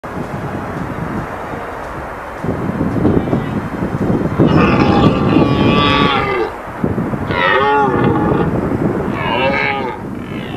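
Red deer stag roaring: one long roar about halfway through, then two shorter roars, each rising and falling in pitch. Before the roars there are a few seconds of steady noise.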